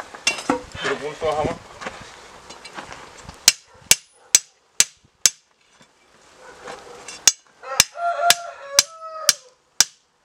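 A hammer strikes a long steel chisel bar driven into a clay bloomery furnace to break out the bloom. The blows are sharp, about two a second, in two runs of five and six with a short pause between.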